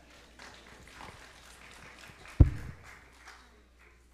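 A few scattered hand claps, then one loud, deep thump about two and a half seconds in from a handheld microphone being bumped or handled.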